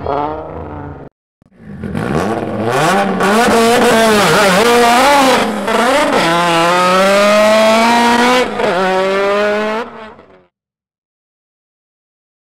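Turbocharged four-cylinder drag car engine with a Precision 6765 turbo, revved up and down at the start line, then launched and pulling hard with the revs climbing steadily. There is a drop in revs at a gear change about two thirds of the way in, and the sound cuts off near the end.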